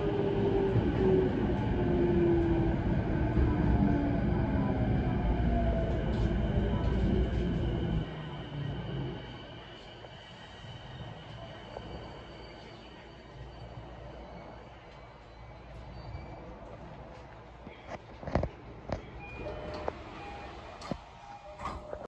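JR East E233-0 series electric train braking to a stop: the motors' whine falls steadily in pitch over the rumble of the wheels, and the running noise drops away about eight seconds in as the train halts. It then stands quietly, with a few short clicks and knocks near the end as the doors open.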